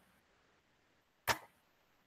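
Near silence, broken once about a second and a quarter in by a single short, sharp click.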